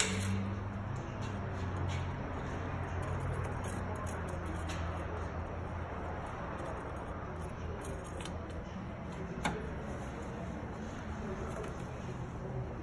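Ratchet and socket on a long extension working the mounting nuts of a newly fitted brake master cylinder: scattered metallic clicks and clinks, the sharpest about two thirds of the way in, over a steady low hum.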